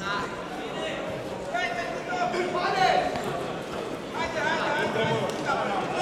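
People's voices calling out and talking across a large sports hall, over a steady background hum of the crowd.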